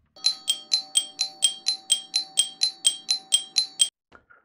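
A single bell-like chime struck over and over, about four times a second on the same note, over a faint steady tone, stopping abruptly just before the end.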